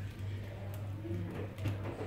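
A steady low hum, with faint soft handling sounds and a brief quiet murmur of voice in the second half.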